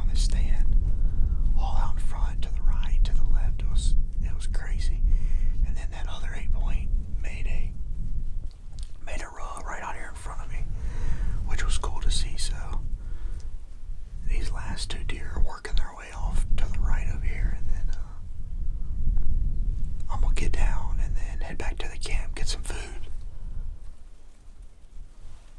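A person whispering in short phrases with pauses between them, over a steady low rumble.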